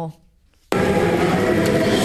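A large church congregation singing a hymn together, cutting in suddenly about two-thirds of a second in and holding loud and steady.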